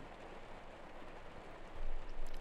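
Steady, even hiss of background noise in a pause between words, with no distinct event; the level rises slightly near the end as speech resumes.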